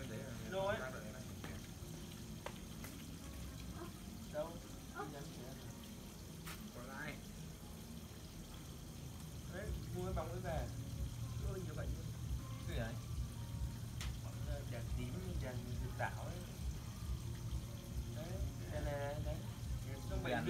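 Scattered conversation, and about halfway in a steady low motor hum with a quick regular pulse starts up and keeps going.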